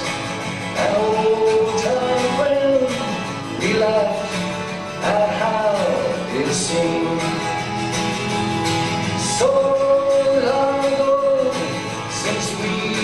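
Man singing a folk song to his own strummed acoustic twelve-string guitar, holding long sung notes over steady strumming.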